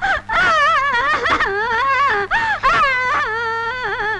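A woman's high voice in long, wavering drawn-out notes with short breaks between them, over a faint steady low hum.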